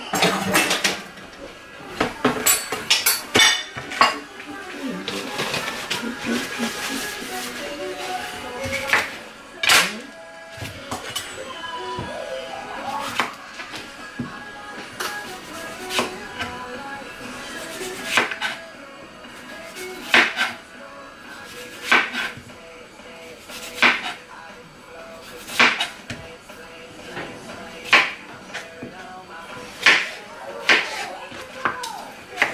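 Knife slicing a cucumber on a plastic cutting board: single sharp strokes about every two seconds in the second half, after a cluster of kitchenware clatter in the first few seconds. Music plays faintly in the background.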